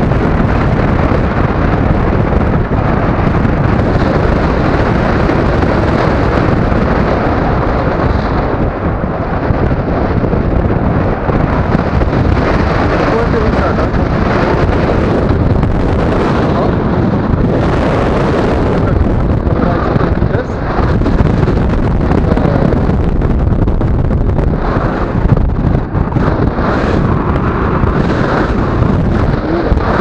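Airflow buffeting the microphone of a camera on a tandem paraglider in flight: a loud, steady rush of noise that wavers slightly in strength.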